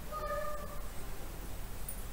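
Whiteboard marker squeaking as it is drawn across the board: one short, steady-pitched squeak of about half a second, shortly after the start.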